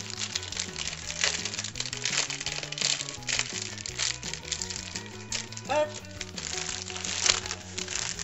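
Plastic cake wrapper crinkling and rustling in short crackles as it is handled and cut open with scissors, over steady background music.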